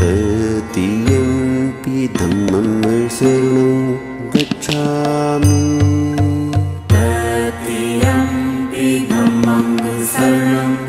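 Devotional music: a chanted, mantra-like vocal melody that bends and glides in pitch over a steady drone, with a low repeating beat in parts.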